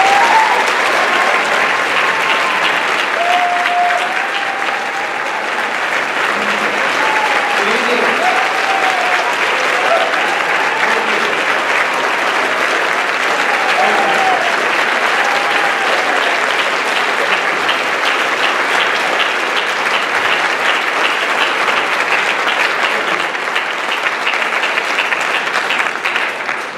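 A large audience applauding steadily and at length in a hall, welcoming a speaker to the podium.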